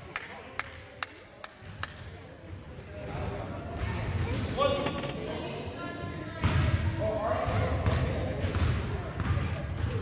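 A basketball bouncing on a gym's hardwood floor, five sharp bounces about half a second apart in the first two seconds, then spectators talking over each other in the hall.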